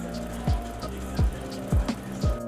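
Background music with a steady beat: three deep kick drum hits that drop in pitch, light ticking cymbals and held synth chords.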